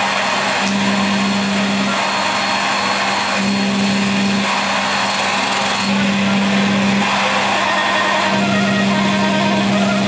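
Dense, loud wall of electronic noise from a live free-improvisation set of electronics and clarinet, with a low hum that cuts in and out about once a second.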